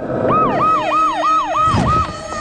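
Police car siren sounding in quick falling sweeps, about four a second, over a steady film-score drone.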